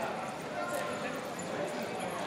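Indistinct background voices and steady room noise, with no clear words.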